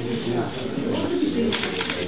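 Indistinct voices talking, with a few short clicks or hisses.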